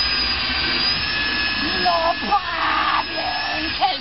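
Corded electric rotary polisher running with a steady high motor whine as its buffing pad is pressed against a plastic headlight lens, polishing the lens clear.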